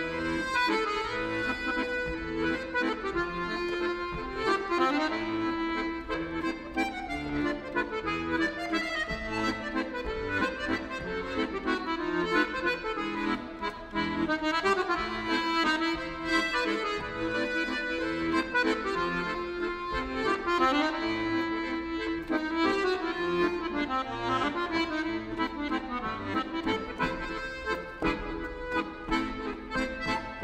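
A Brandoni piano accordion playing a solo tune, the melody on the right-hand keyboard over left-hand bass and chords.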